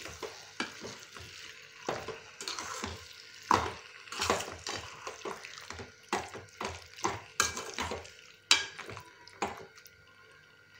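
A metal slotted spoon scraping and stirring chicken pieces in masala around a metal pan, in irregular strokes, with frying going on underneath.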